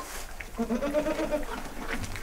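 A goat bleating: one wavering call about a second long, starting about half a second in.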